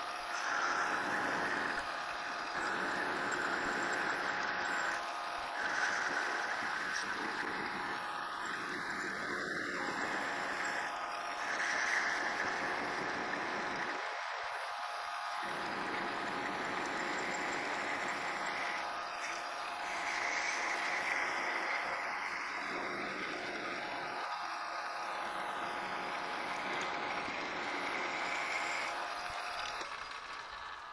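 Metal lathe running with its single-point tool cutting a taper while the compound slide is fed by hand. The machine sound is steady, and a higher cutting noise comes and goes as each pass is made.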